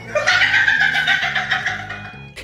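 A man wailing in a high, quavering sob, his voice pulsing several times a second and fading near the end, so that it sounds almost like a clucking hen.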